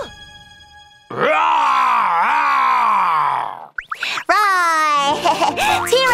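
Cartoon sound effects: a long, wavering vocal groan lasting about two and a half seconds, then a few quick sliding, boing-like whistle glides. Children's cartoon music starts near the end.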